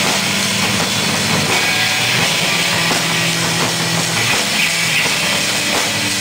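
Live heavy metal played by several drum kits and electric guitars: a dense, steady drum pattern with kick drums under held low guitar notes that change every second or so.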